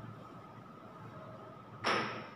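A marker tapping against a whiteboard while writing: one sharp tap with a short ring that fades quickly, near the end, over a faint steady whine.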